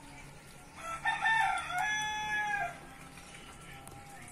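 A rooster crowing once: a single call of about two seconds that ends in a falling note.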